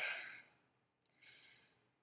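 A woman's breathy exhale as she breaks off speaking, fading within half a second, then a faint intake of breath about a second in.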